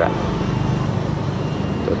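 Steady street traffic noise with a continuous low engine hum from nearby vehicles.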